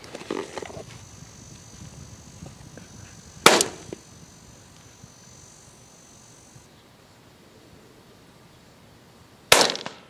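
Two rifle shots about six seconds apart, each a sharp crack followed by a brief rolling echo.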